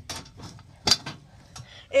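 Metal wire cage trap being set by hand: two sharp metallic clicks as its door and trigger are latched, the louder one about a second in.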